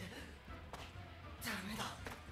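Anime soundtrack at low level: a short knock about a third of the way in, then a man's voice speaking Japanese dialogue near the end, over a low steady hum.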